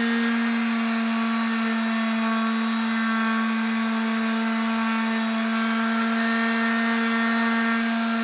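Makita M9204 random orbit sander running at a steady, unchanging pitch. Its spinning sanding disc is held against a rubber sandpaper-cleaner block, which clears clogged, baked-on finish from the paper.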